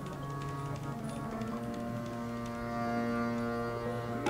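Harmonium playing sustained notes and chords, shifting to a new chord about halfway through, with a few light taps on the tabla.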